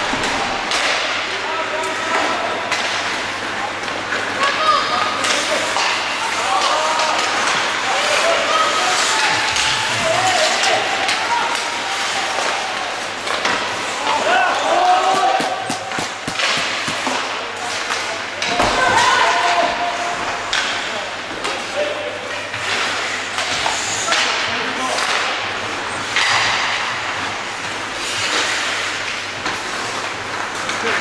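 Indoor ice hockey game: players and spectators shouting, with frequent clacks of sticks on the puck and thuds against the boards, echoing in the rink.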